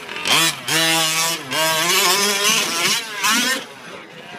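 Small two-stroke engine of a 1/5-scale gas RC short course truck revving hard. Its pitch rises, holds and falls with the throttle, with brief dips between bursts.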